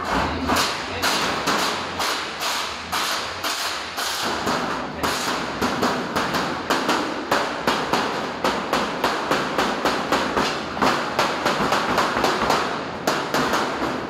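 Hammering on a large sheet-metal elbow cladding section: a steady run of sharp strikes, about three a second and quickening in the second half, each ringing briefly off the metal.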